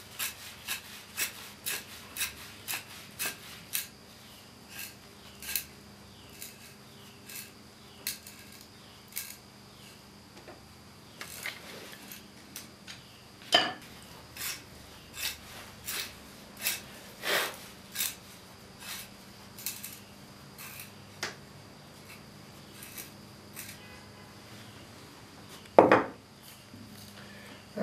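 Hand knife paring the end of a split wooden chair spindle, each cut a short, crisp stroke: about two a second for the first few seconds, then sparser strokes with pauses between.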